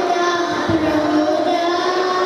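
Young girls singing into a handheld microphone, holding long notes. A brief low thump comes about two-thirds of a second in.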